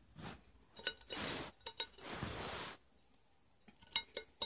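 Several light clinks of a metal fork against a china plate, with soft rushing noises in between.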